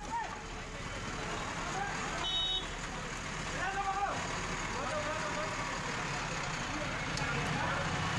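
A heavy demolition machine's engine running under several people's voices, some raised and shouting, with a brief high tone about two seconds in.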